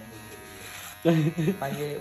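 Electric hair clipper running steadily, with a man's voice coming in over it about a second in.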